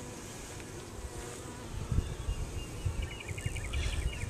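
Honeybees humming quietly around an opened hive, with low thumps from about halfway through and a quick run of high chirps near the end.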